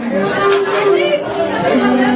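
Several people talking at once: lively crowd chatter in a large room.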